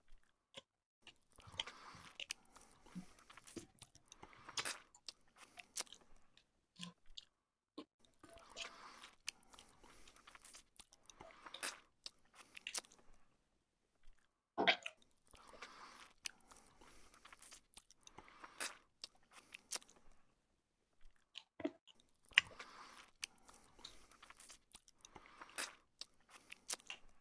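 A person chewing and biting into pizza. The chewing comes in bouts a few seconds long with short quiet pauses between, and there is a sharper, louder mouth sound about fifteen seconds in.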